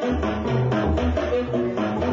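Improvised music: a tenor saxophone playing quick short notes over percussive drum sounds and low bass notes.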